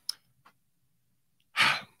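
A man's short breathy exhale, like a sigh, near the end, after a faint click just after the start.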